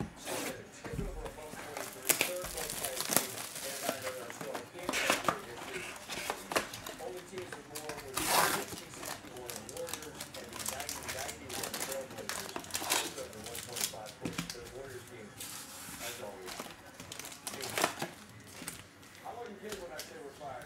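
Cardboard trading-card box being torn open along its perforated strip and its foil card packs handled, crinkling: scattered rips and rustles, the loudest about eight seconds in.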